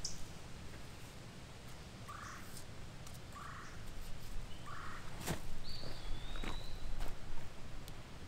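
Outdoor ambience with three short, harsh animal calls a little over a second apart, then a sharp snap about five seconds in and a clear whistled bird note that dips slightly in pitch.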